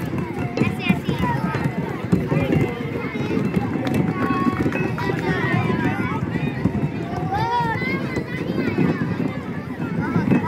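Many children's voices chattering and calling out together, with a few high squealing calls now and then, over a steady low rumble.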